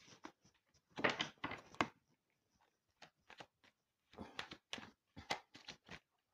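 A deck of cards being shuffled by hand: short clusters of card slaps and rustles, busiest about a second in and again over the last two seconds.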